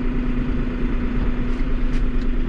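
Diesel engine of a new New Holland loader tractor idling, heard from inside the cab: a steady low hum and rumble.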